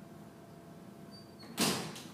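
One short scrape-like knock on a canvas-covered worktable about one and a half seconds in, from the potter's hands setting down a soft clay cup cylinder and reaching among his hand tools. A faint steady room hum lies underneath.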